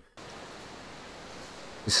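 Steady, even hiss of recorded ambience from the sneezing-panda clip's soundtrack, starting abruptly just as playback begins.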